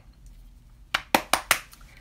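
Makeup containers being handled and knocking together: four sharp clicks in quick succession about a second in, after a quiet start.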